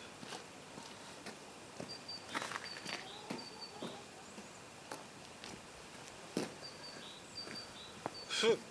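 Quiet outdoor garden ambience: short high bird chirps repeat every second or so, with scattered faint clicks and knocks.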